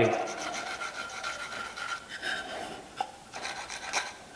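Pencil scratching across a wooden board, drawing the marking-out lines for the waste of a half-lap miter joint, with one light tick about three seconds in.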